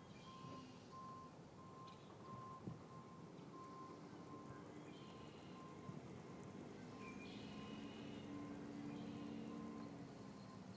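Faint electronic beeping at one steady pitch, about two short beeps a second, over a low hum, with a few brief higher chirps.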